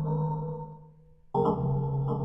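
Contemporary ensemble music with live electronics: a sustained low drone and chord fades away to near silence. A little past halfway a new held chord over a steady low tone cuts in suddenly.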